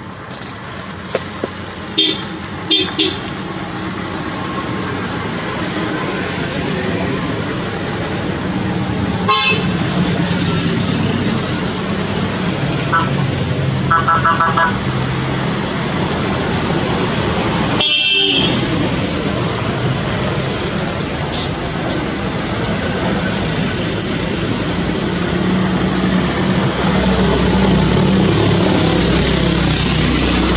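A convoy of 4x4 off-road vehicles driving past on a gravel road, engines running steadily. A few short horn toots sound about midway. The sound grows louder toward the end as the vehicles come closer.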